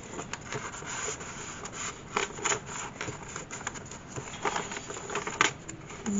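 Paper rustling and rubbing as the pages and a loose card of a thick handmade paper journal are handled and turned, with a few short, sharp paper clicks in between.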